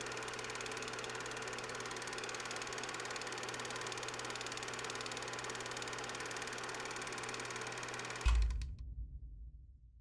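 Old film projector running: a steady, fast mechanical clatter over a low hum. About eight seconds in it stops with a low thump that dies away over the next second or so.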